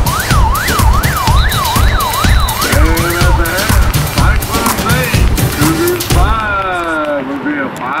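Dance music with a heavy beat played over a stadium public-address system. A siren-like warble rises and falls about twice a second for the first three seconds. The beat cuts out about six seconds in, leaving sliding tones just before an announcer begins.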